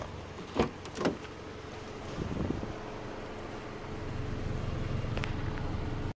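Knocks and clicks from handling a parked car: two sharp knocks about half a second apart near the start and a short click near the end, over a faint steady hum.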